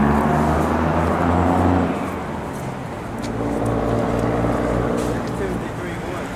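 A road vehicle's engine running in street traffic: a low, steady hum that is loudest in the first two seconds, eases, then swells again through the middle.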